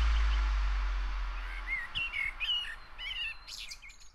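A low bass note from the closing music fading away, then a bird singing a quick series of short whistled chirps from about halfway through, ending in a few rougher calls.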